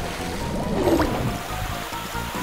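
Background music with a cartoon splashing, sloshing sound effect of thick liquid chocolate, with a short rising swoop about a second in.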